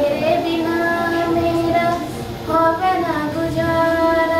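A girl singing, holding long notes without words: one held note through the first two seconds, then a new phrase about two and a half seconds in that bends in pitch before it settles into another long note.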